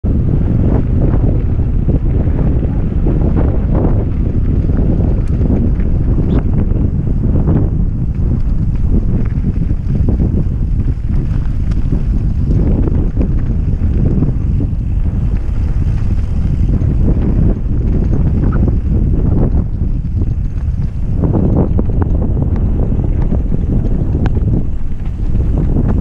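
Wind buffeting the microphone of a rider-mounted camera on a mountain bike going downhill on a dirt trail: a steady, loud low rumble, with frequent short knocks from the bike over the rough ground.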